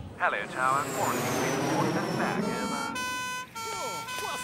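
A cartoon two-tone emergency siren sounds from a little over halfway in, stepping between a higher and a lower pitch about every half second: the ambulance arriving. Before it comes a short vocal sound and a high whine that falls slowly in pitch.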